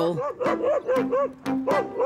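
Saluki barking in a quick, steady run of short barks, about four a second, over background music.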